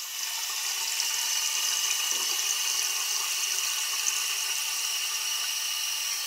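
Tap water running in a thin stream into a glass beaker standing in a sink, a steady splashing sound as the beaker fills.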